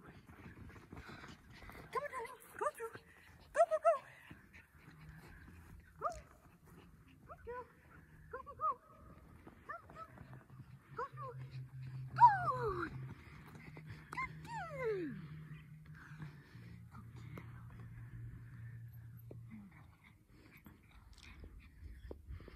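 A small Schipperke dog and its handler's voice during an agility run: short, high-pitched yaps and calls, with two long calls that slide steeply down in pitch around the middle.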